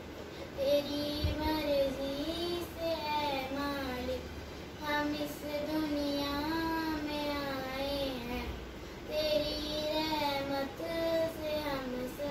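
A young girl singing a prayer solo and unaccompanied, in long held phrases with a slight waver in the held notes. Her voice breaks off briefly for breath about four and nine seconds in.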